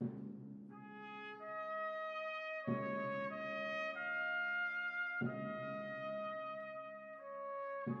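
A trumpet ensemble with lower brass plays a slow, solemn piece in long sustained chords. A new chord enters about every two and a half seconds.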